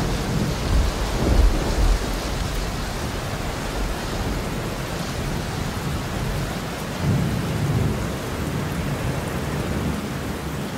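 Steady rain with rolling thunder: a heavy low rumble in the first two seconds and another about seven seconds in.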